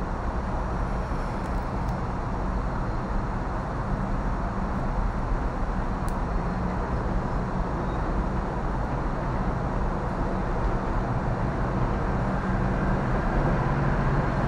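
Steady low rumbling background noise with no single sound standing out.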